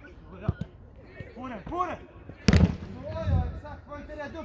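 A ball struck hard on a training pitch: one loud, sharp thump about two and a half seconds in, with a smaller knock near the start. Short voice calls come just before and after the thump.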